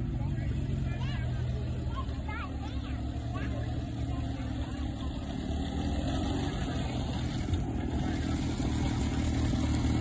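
Small Crosley four-cylinder engine running steadily as a home-built Model T replica drives slowly across grass, growing louder as the car comes close near the end.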